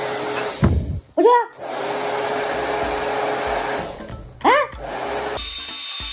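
Handheld hair dryer running steadily, blowing on a burning storm match, with its sound breaking off briefly about a second in. Two short pitched sounds that rise and fall come over it, about a second in and again about four and a half seconds in.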